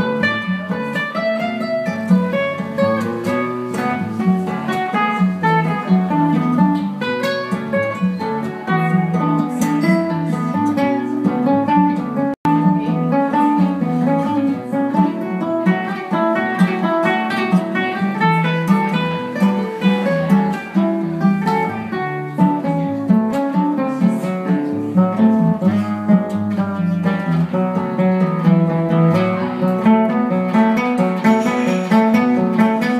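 Two nylon-string classical guitars playing a Brazilian-style instrumental passage, plucked higher notes over a lower bass line, with a momentary cut-out in the sound about twelve seconds in.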